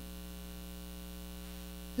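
Steady electrical mains hum with several evenly spaced overtones.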